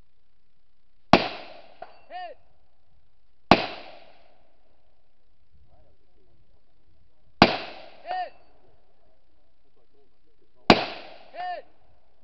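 Four rifle shots fired slowly from prone, a few seconds apart. About a second after three of them a faint pitched ring comes back from a hit distant steel target; the second shot gets no ring.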